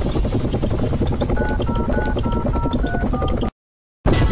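Helicopter rotor sound effect, a fast steady chopping, with a quick run of about seven short two-tone beeps like touch-tone phone keys over it. It all cuts off abruptly about three and a half seconds in.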